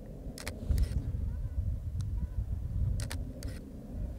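Low, uneven outdoor rumble in an open field, with a few faint clicks from handling the camera and its filter holder.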